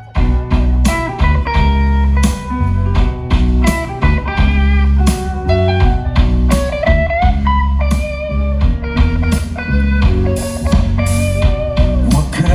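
Live band music: a guitar-led song kicks in suddenly at the start over a steady beat and heavy bass.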